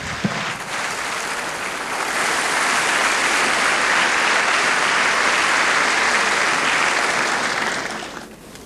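Large hall audience applauding, swelling about two seconds in and dying away near the end.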